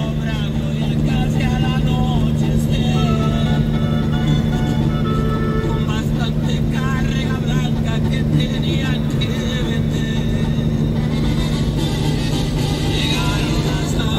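Steady low drone of a semi-truck's engine and road noise heard from inside the cab while driving along the highway. Faint music, or a voice, plays over it.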